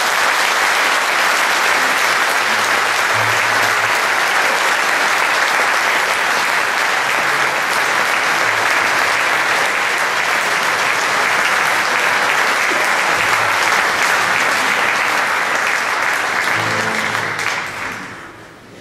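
A large audience applauding steadily; the clapping dies away near the end.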